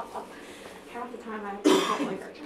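A brief murmur of voice, then a single short cough near the end.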